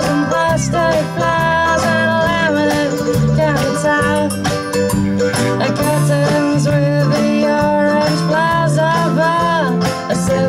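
Live indie folk band playing: strummed acoustic guitar, mandolin, bass guitar and drums, with a woman singing the lead.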